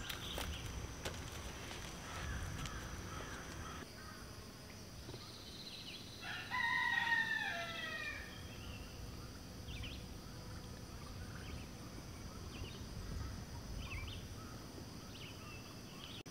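A rooster crowing once, faintly, about six seconds in: a call of about a second and a half that falls in pitch at the end. Faint short bird chirps are heard later.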